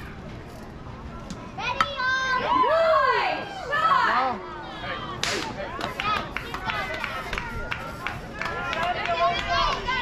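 A softball bat cracking against the ball a little under two seconds in, followed by a burst of high-pitched yelling from children and spectators as the play runs.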